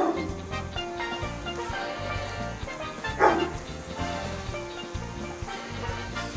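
Background music with a steady beat, over which a dog barks twice: once at the very start and again, louder, about three seconds in.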